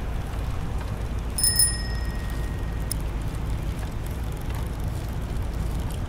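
A single bright bell ding about a second and a half in, its tone ringing on for about a second and a half, over a steady low rumble of city traffic.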